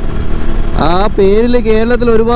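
Motorcycle riding noise: a steady low rumble of engine and wind. A man's voice comes in about a second in, in long, drawn-out, sing-song tones.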